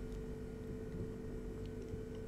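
A faint, steady drone of two held low tones with a soft low rumble beneath, unchanging through the pause.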